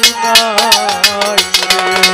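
Live Bangla Baul folk music: a violin plays a gliding melody over a fast, steady beat of bright metallic percussion struck several times a second, with a long held low note beneath.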